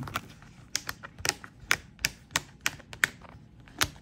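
A string of about a dozen sharp, irregular clicks: a translucent dashboard page's punched edge is being pressed and snapped onto a Happy Planner's black binding discs.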